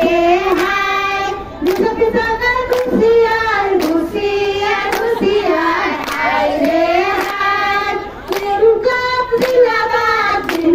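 A group of women singing together, with hand clapping in time, about one or two claps a second.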